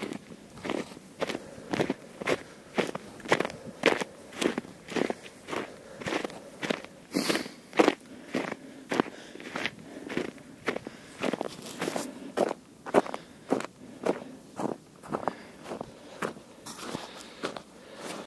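A runner's footsteps crunching in snow, evenly paced at about two steps a second.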